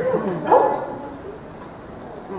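A person's voice making a short wordless sound with a sliding, wavering pitch in the first half-second or so, then fading to quieter hall sound.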